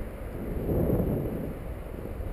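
Wind noise on the microphone of a handheld action camera during a paraglider flight: a steady low rumble.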